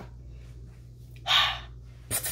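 A single short, loud huff of breath about a second in, over the steady low hum of a running ceiling fan.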